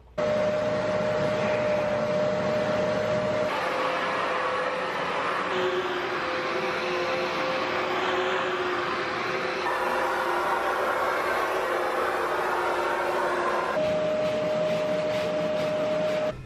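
Bissell upright carpet cleaner's suction motor running with a steady whine, its pitch and noise shifting abruptly several times.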